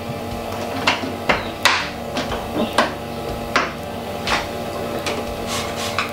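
Stainless steel lid of a Grainfather conical fermenter being seated and secured: a series of irregular sharp metallic clicks and knocks. Under them runs a steady hum from the cooling unit that is still chilling the wort.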